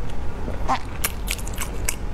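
Close-miked wet chewing of a mouthful of egg and noodles, with a run of sharp mouth clicks in the second half.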